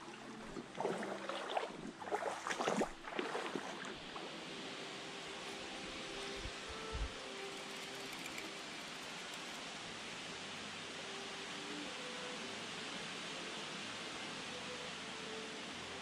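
Shallow stream running with a steady hiss of water. Loud irregular rustling and knocks in the first few seconds, from close handling.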